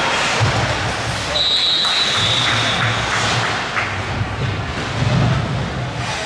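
Ice rink game noise during a youth hockey game: skates scraping, sticks clattering and spectators' voices blend into a steady din. A high, steady tone sounds for about a second and a half, about a second in.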